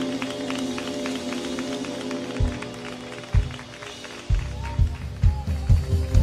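Live band instrumental: held keyboard chords fade over the first half, two single drum hits land about a second apart midway, and from about four seconds in the drum kit and bass drum come in with a driving beat, building into the next section of the song.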